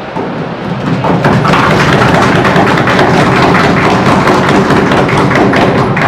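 Audience clapping: a dense, steady round of applause from a roomful of people, swelling about a second in.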